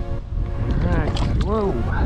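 Strong wind buffeting the microphone as a loud, steady low rumble. About a second in, a short voiced sound from a person rises and falls in pitch.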